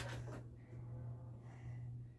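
Faint room tone: a steady low hum and little else.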